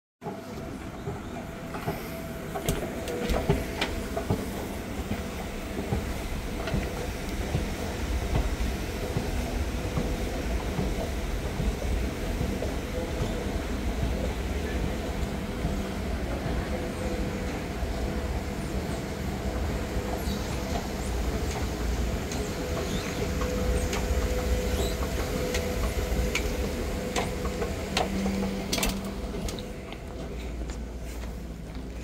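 Kone escalator running: a steady low mechanical rumble with a faint, even hum and a few scattered clicks.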